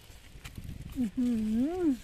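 A woman's drawn-out hummed 'mmm', its pitch dipping, then rising and falling, starting about a second in. Before it, a faint low rumble.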